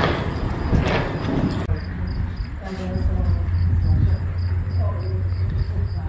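Crickets chirping in an even rhythm of about three chirps a second, starting about two seconds in over a steady low rumble.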